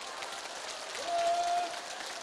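Audience clapping, a dense patter of many hands, with one voice briefly holding a note about a second in.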